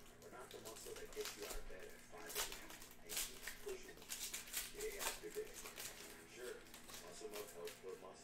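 Foil trading-card pack wrapper crinkling and tearing as it is pulled open and peeled off the cards, in a run of sharp crackles, loudest around two and a half, three and five seconds in. Faint voices murmur underneath.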